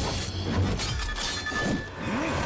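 Sword-fight sound effects: metal blades clashing and swishing, with a high ringing tone held for most of a second near the end, over dramatic background music.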